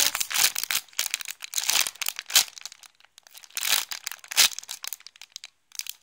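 Clear plastic bag crinkling in uneven bursts as the soft foam bread squishy inside it is squeezed and turned by hand. Sharper crackles come about two and a half and four and a half seconds in, with short quiet pauses between bursts.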